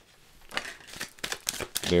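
A tarot deck being shuffled by hand: a quick, uneven run of papery card clicks that starts about half a second in. A man's voice begins right at the end.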